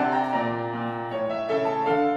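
Saxophone and piano playing classical music: a melodic line in held notes over piano accompaniment.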